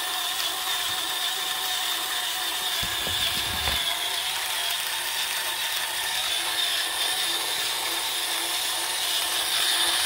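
Starseeker Edge electric burr grinder running steadily, its slow-turning burrs crushing a single dose of coffee beans. A brief low thump comes about three seconds in.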